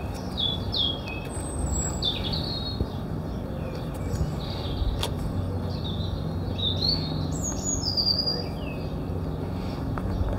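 Small birds chirping repeatedly, short downward-sweeping calls, over a steady low background rumble, with a single sharp click about five seconds in.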